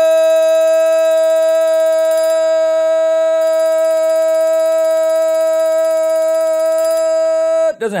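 A single loud, steady tone held at one pitch with many overtones, cutting off suddenly shortly before the end: a sustained sound effect added in the edit.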